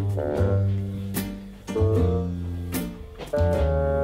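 Jazz background music with double bass and piano, the bass notes changing about every second, with a few sharp percussion hits.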